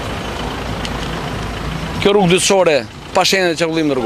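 A car engine running close by at low speed, a steady low hum, with a man's voice speaking over it from about halfway.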